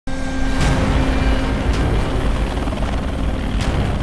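Loud, steady mechanical rumble with a heavy low end, broken by three sharp cracks: near the start, in the middle and near the end.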